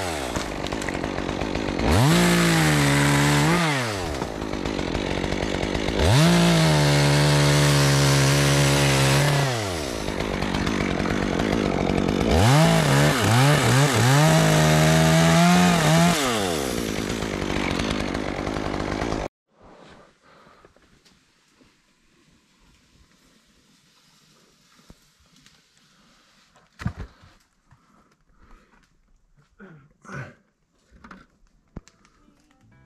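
Two-stroke chainsaw cutting pine limbs up in a tree, revved up and down in about four bursts with the pitch sagging under load. It cuts off suddenly about two-thirds of the way through, leaving near quiet with a single faint knock.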